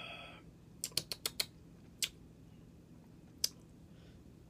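A person tasting a dark cream soda: a brief sip at the very start, then a quick run of small lip-smacking clicks about a second in and two more single clicks later, as the taste is worked over.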